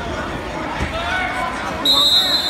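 Referee's whistle blown near the end, one steady shrill tone over people's chatter, with a dull thump under a second in.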